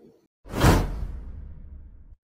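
Whoosh sound effect with a deep boom underneath. It starts sharply about half a second in and fades away over about a second and a half.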